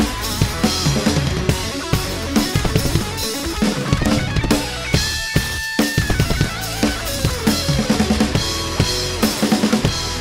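Acoustic drum kit played along to the song's backing track: a steady groove of kick, snare and cymbals over the instrumental music, with a short break about five seconds in where the drums drop out under one held high note.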